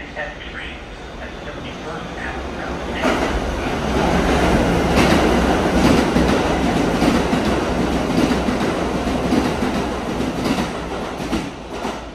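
A Kawasaki R211T subway train passes through an underground station on the express track, its wheels clacking over the rail joints. It builds up about three seconds in and fades out near the end.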